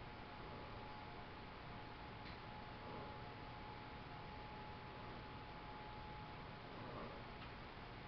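Quiet room tone: a steady hiss with a faint high whine, and a couple of faint ticks, one a couple of seconds in and one near the end.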